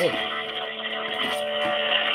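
Telephone hold music from a pharmacy's automated phone line, playing over a phone's loudspeaker: steady held notes, thin and cut off above the middle range as over a phone line.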